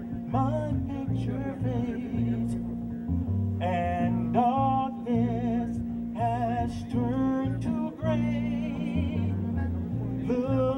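Live jazz combo playing an instrumental passage: a saxophone carries the melody with a wavering vibrato over upright bass, keyboard, drums and congas.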